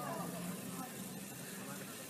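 Faint, indistinct voices over a steady background noise.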